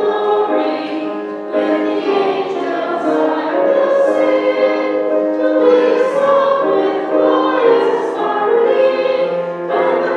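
A hymn sung by a woman and a man with instrumental accompaniment, in long held notes.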